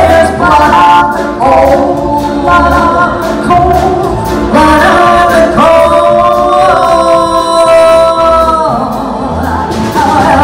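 Two women singing a comic folk song, backed by a small band of piano, upright bass and drums. A long note is held from about six seconds in to nearly nine.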